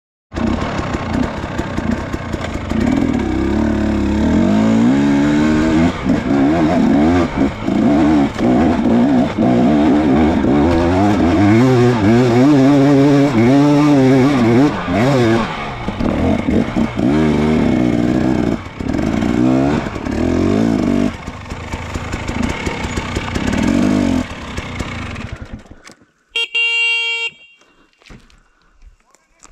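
Dirt bike engine revving up and down under load on a steep climb, the pitch rising and falling with the throttle. Near the end the engine dies away, and a short buzzy beep follows.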